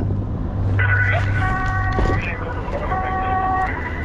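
A vehicle running with a steady low hum. Twice over it comes a steady chord of several held tones, each lasting under a second and about two seconds apart.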